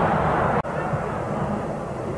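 Steady stadium crowd noise from a football match broadcast, a continuous hum with no distinct cheer, broken by a momentary dropout just over half a second in.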